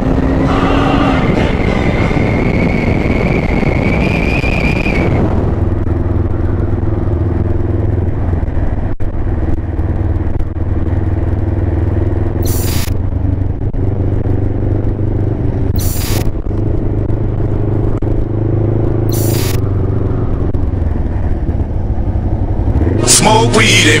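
Kawasaki ER-5 parallel-twin motorcycle engine heard from the rider's seat: first with wind noise and a rising whine as it picks up speed, then, after a cut, running steadily at low town speed. Three short hissing bursts about three seconds apart come over the engine, and music comes in loudly about a second before the end.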